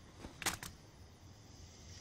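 Two or three brief sharp clicks about half a second in, then a faint steady low background.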